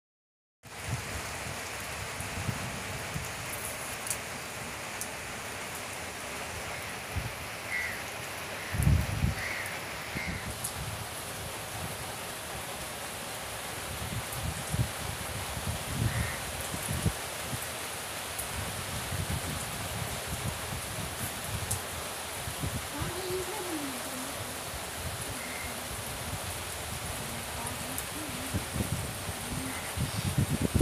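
Steady hiss of rain falling over flooded fields, with gusts of wind rumbling on the microphone, the strongest about nine seconds in.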